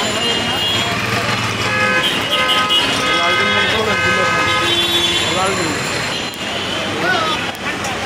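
Roadside traffic noise with a vehicle horn held as one long steady tone for about three seconds, starting about two seconds in, over background chatter.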